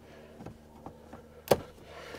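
A plastic pop clip in a trim panel being pried out with a flathead screwdriver: a few faint ticks, then one sharp snap about one and a half seconds in as the clip pops free.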